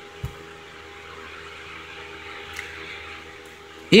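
Quiet room tone through the recording microphone: a low steady hiss with a faint hum, and one soft thump about a quarter second in.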